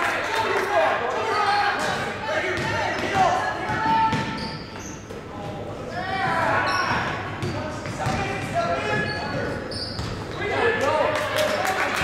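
Basketball game in an echoing gym: a ball bouncing on the hardwood floor in repeated sharp knocks, with voices calling out across the hall.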